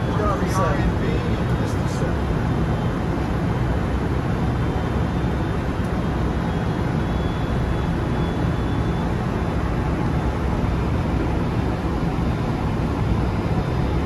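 Steady airflow and air-conditioning noise on an airliner flight deck during the approach, a constant low rush with no change.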